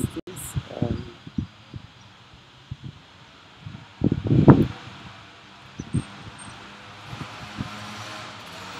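A person's voice in a thinking pause: a brief murmured syllable near the start, then a louder hum-like sound about halfway through. Scattered soft low knocks run throughout.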